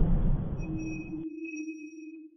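Logo-intro sound effect: a low, noisy swell fades and stops just over a second in, while a clean electronic ping starts about half a second in and rings steadily with a low note and two bright high overtones.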